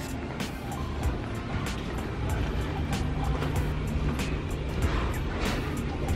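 Background music with a regular beat, over a steady low rumble.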